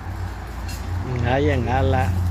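A person's voice, a drawn-out utterance starting about halfway through, over a steady low rumble.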